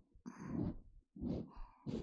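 Close-up rubbing strokes of an ear-cleaning tool along the rim of the outer ear on a binaural microphone, about three scratchy strokes in a loose rhythm.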